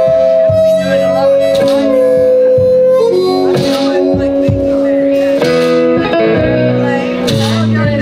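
Blues harmonica in a neck rack playing long held notes that change pitch a few times, over an amplified electric guitar.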